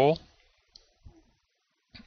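A man's speaking voice trails off at the end of a phrase, then comes a pause of quiet room tone with two faint clicks, and his voice resumes right at the end.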